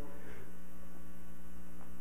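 Steady electrical mains hum from the sound system, holding level with no change throughout.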